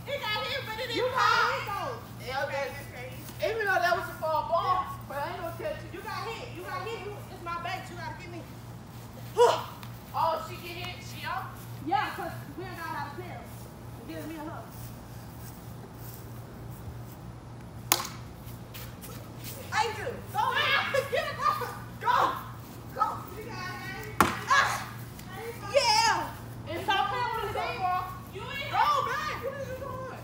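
Voices of children and teenagers at play, talking and shouting on and off, with a quieter stretch in the middle. A few sharp knocks stand out, one about 18 seconds in.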